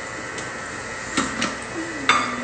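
Lid being fitted onto a Thermomix mixing bowl, giving two light clicks a little over a second in as it is set and locked in place.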